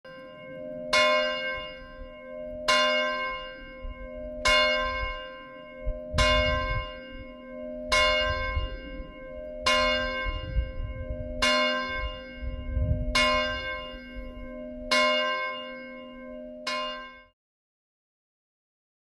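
A single bell struck ten times at a slow, steady pace, about one strike every two seconds, each stroke ringing on until the next. A low rumble runs under the middle strikes, and the ringing is cut off abruptly near the end.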